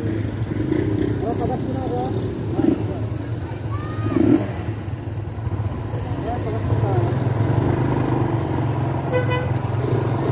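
Motorcycle engines running at low speed, growing louder about two-thirds in as the bikes move off, with a short horn beep near the end.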